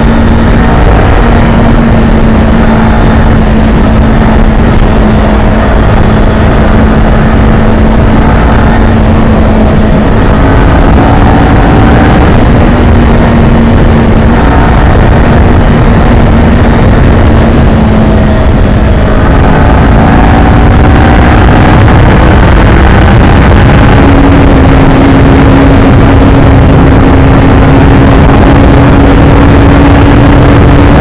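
Kawasaki Ninja 400 parallel-twin engine under way at cruising speed, heard from the rider's seat over heavy wind rumble. The engine note holds steady, dips briefly at about 18 seconds, then climbs and stays higher for the last several seconds.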